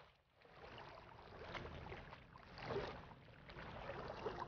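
Faint river water lapping against shore rocks, rising and falling in small swells every second or so.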